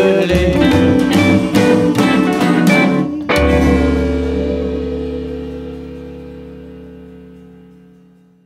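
A band plays the last bars of the song with no singing, then hits one final chord a little over three seconds in. The chord rings out and fades slowly away.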